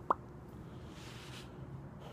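A short, sharp mouth pop with a quick upward sweep in pitch as a cigar is drawn away from the lips, followed about a second later by a faint, breathy exhale.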